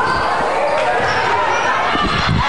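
Basketball game sounds in a gymnasium: a ball bouncing on the hardwood floor amid players' footsteps and voices from the court and stands.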